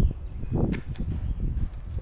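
Footsteps on pavement as someone walks with a handheld camera, over a low rumble of wind on the microphone, with a few light clicks near the middle.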